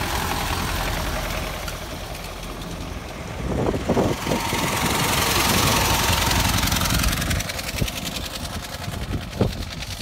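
Ford Model T four-cylinder engines running as the cars drive slowly past, growing louder a few seconds in as one comes close, then easing off.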